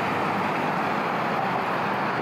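A road vehicle passing close by, its tyre and engine noise holding loud and steady at its nearest point.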